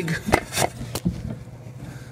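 Three sharp knocks within the first second, then faint scraping: handling noise of a handheld camera bumping and rubbing against the wooden edges of a hole in a ceiling.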